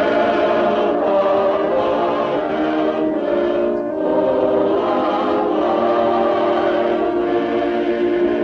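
Choir singing a slow hymn in held chords.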